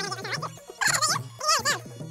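Background music with a repeating low bass line. Over it come three loud, wavering high cries with a wobbling pitch: one under way at the start, one about a second in, and one near the end.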